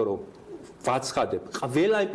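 A man speaking Georgian, pausing briefly near the start and then talking on.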